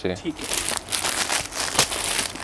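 Clear plastic packets of folded suits crinkling as they are handled and laid out, a rapid irregular crackle.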